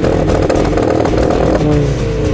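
Two-litre turbocharged car engine revved through its twin-tip exhaust: the revs hold high, then drop and fall away about a second and a half in.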